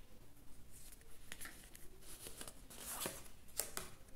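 Faint rustling and light clicks of stiff oracle cards sliding against each other as one card is drawn from a hand-held fanned deck, with a few sharper flicks in the second half.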